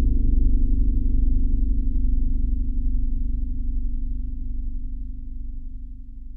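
A low sustained musical drone over a deep rumble, fading out slowly.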